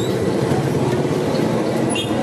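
A steady, loud low rumble of motor traffic noise, with no single event standing out.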